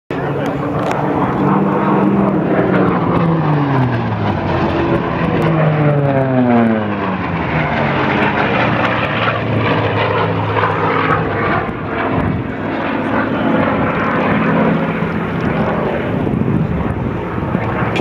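Hawker Fury piston-engined fighters diving past: the propeller engine note falls in pitch twice in the first seven seconds as they go by, then settles into a steady drone.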